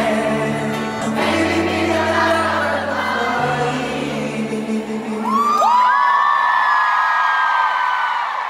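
Live pop concert in an arena: a singer's piano ballad with bass, heard from the audience. About five seconds in, the low accompaniment drops away and a high sung note rises and is held.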